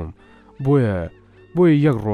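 A man's voice intoning a Quranic verse in Arabic in long, gliding phrases, two of them, the first about half a second in and the second near the end, over a soft, steady background music bed.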